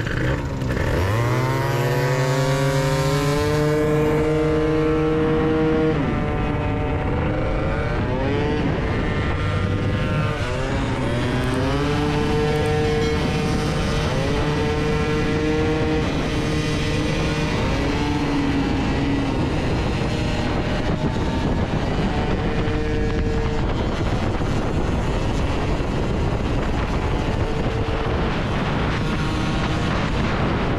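Two-stroke scooter engine pulling away hard, its pitch rising over the first few seconds and then holding steady at cruising speed, with a dip and a second rise about ten seconds in. Constant wind and road noise underneath.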